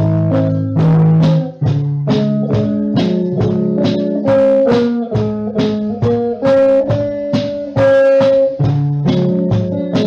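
Instrumental break: an amplified electric guitar plays held notes over a steady beat of about three strokes a second.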